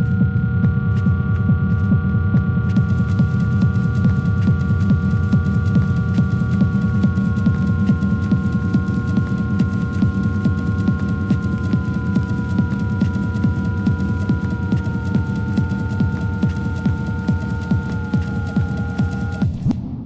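Electronic dance music from a DJ mix: a dense, throbbing low end under held synth tones, one of which steps slowly down in pitch. The music cuts off just before the end and rings away.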